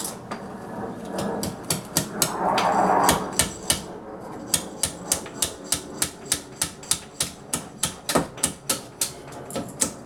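A hammer striking in a steady run of sharp blows, about three a second, through the second half. Before that come a rough scraping noise and a few scattered knocks.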